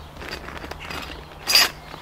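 A plastic bag of small metal nuts and bolts being handled: a soft rustle and light clinking, then one sharp, loud rustle-and-clink about one and a half seconds in.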